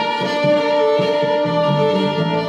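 Violin played live in an acoustic band: one high tone held steady while lower notes shift every half second or so.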